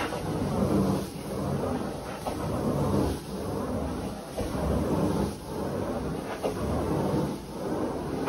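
Hot water extraction carpet-cleaning wand sucking water and air through the carpet pile: a loud rushing noise that dips and surges about once a second as the wand is stroked across the carpet.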